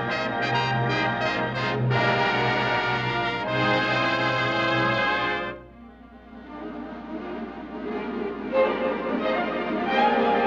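Orchestral dance music with prominent brass: loud held chords with short stabs at first, dropping away suddenly about five and a half seconds in, then building back up more softly.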